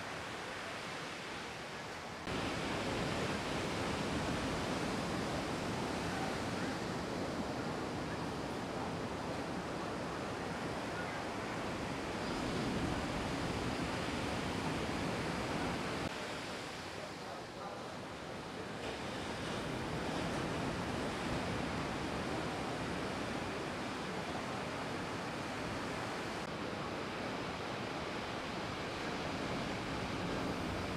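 Ocean surf breaking on a beach: a steady rush of wave noise with no distinct events. It jumps louder about two seconds in, dips for a couple of seconds a little past the middle, and shifts in tone again near the end.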